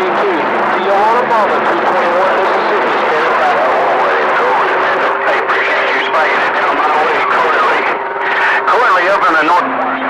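CB radio receiver on channel 28 picking up long-distance skip: garbled, unintelligible voices through heavy static, with steady whistle tones running under the talk. A lower whistle comes in near the end.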